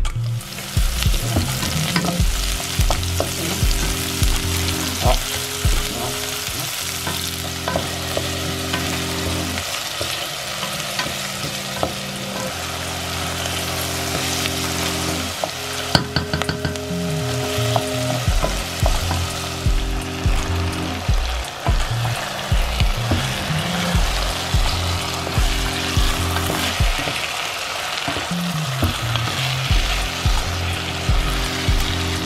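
Diced tomatoes, onions and then chicken pieces sizzling as they fry in a pot, stirred with a wooden spatula that scrapes and knocks now and then. Soft background music plays underneath.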